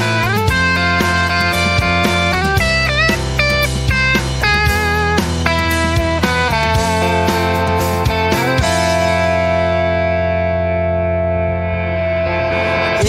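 Instrumental music with no singing: a guitar plays a lead line with bent notes over a steady band, then settles on a long held chord for the last few seconds.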